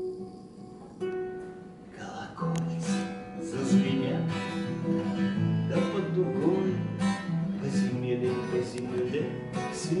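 Acoustic guitar being strummed in an instrumental break between sung lines. It is sparse and quiet at first, then fuller, rhythmic strumming comes in about two and a half seconds in.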